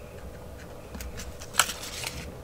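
Paper being slid and pressed into place by hand: faint rustling with two light clicks, the sharper one about one and a half seconds in.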